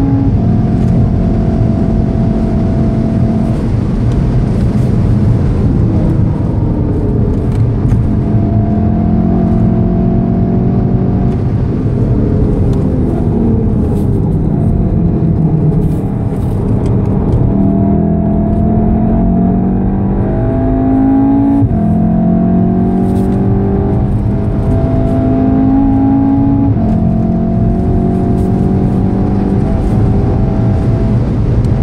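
2014 VW Golf VII R's turbocharged four-cylinder engine, heard from inside the cabin over road and wind noise. It runs hard at high revs, falls in pitch as the car brakes and downshifts for a corner about halfway through, then climbs again with two upshifts.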